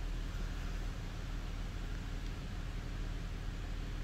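2007 Buick Lucerne's 3800 Series III V6 idling, heard from inside the cabin as a steady low hum under an even hiss of air from the climate-control vents.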